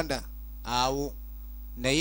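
Steady electrical mains hum under a person's voice: one drawn-out, falling vowel sound about halfway through, and another starting near the end.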